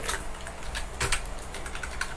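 A few scattered keystrokes on a computer keyboard, with a quick cluster of clicks about a second in.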